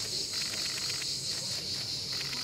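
A steady, high insect chorus outdoors in summer, with a short, rapidly pulsing trill over it about half a second in.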